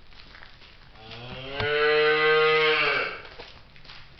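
A dairy cow mooing once: one long, loud moo lasting about two seconds, starting about a second in and dropping in pitch as it ends.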